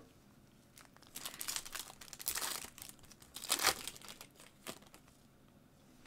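Foil wrapper of a trading-card pack crinkling and tearing as the pack is ripped open, in several bursts from about a second in to near the five-second mark.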